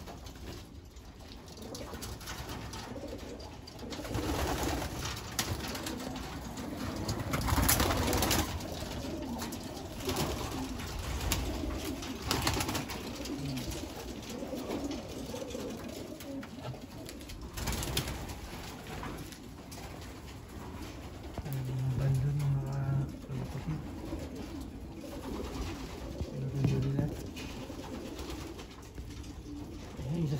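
Racing pigeons cooing in their loft, with a few low drawn-out coos in the last third. A few louder, short rustling bursts come along the way.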